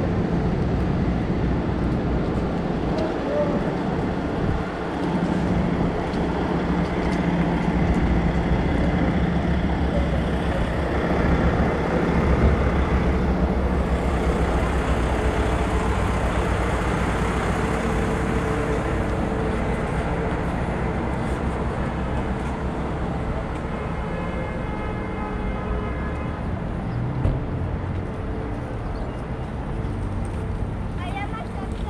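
Steady city street traffic: cars and trucks running along the road with a continuous engine and tyre rumble.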